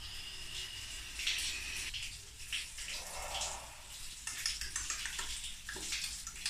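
A long drag on a vape mod: a soft, steady hiss with scattered faint crackles, over running water.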